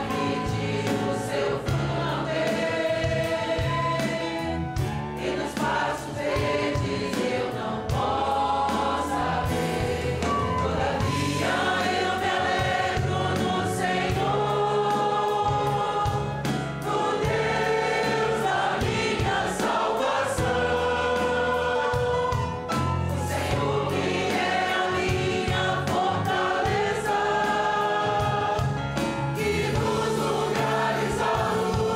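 Congregation singing a Portuguese hymn together with a live band. A steady, rhythmic bass and accompaniment run beneath the voices.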